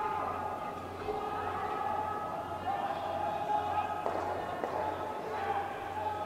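Curling arena ambience: faint, indistinct voices over a steady hum, with a couple of light knocks about four seconds in.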